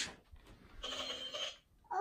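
A child's electronic toy playing a short sound, about half a second long, near the middle.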